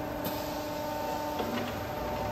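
Steady hum of the hydraulic power unit on a CNC flat bar bending machine, its electric motor and pump running at an even pitch, with a few faint ticks about a second and a half in.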